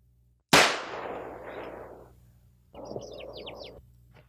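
A single gunshot about half a second in, with a long echoing decay. About three seconds in, birds chirp rapidly over a brief rush of noise.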